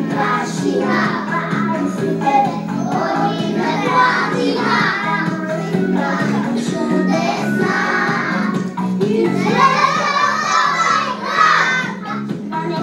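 A group of young children singing a song together in unison to recorded backing music.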